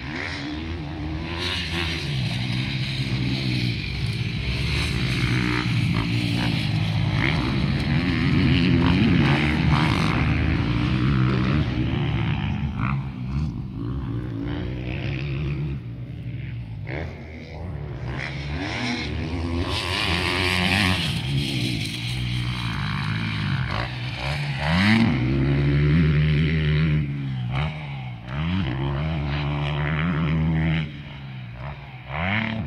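Motocross motorcycles running on a dirt track, engines revving up and falling back over and over with throttle and gear changes. The sound swells louder twice, about a third of the way in and again near the end.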